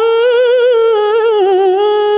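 A woman reciting the Quran in the melodic tilawah style into a microphone, holding one long note. The note wavers quickly, dips lower with a trembling ornament past the middle, then settles into a steady held tone.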